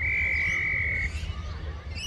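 A single blast on an umpire's whistle: one steady high tone lasting about a second, then cut off.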